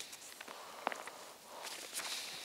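Faint rustling of a paper Bible being opened and its thin pages leafed through, with one soft click just under a second in.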